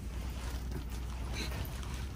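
Light rustling of cotton sweatshirts being lifted and laid out on a shop counter, over a steady low room hum.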